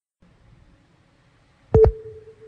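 Countdown-timer sound effect: after a brief silence a faint low rumble starts, and near the end comes a sharp double click with a short mid-pitched beep.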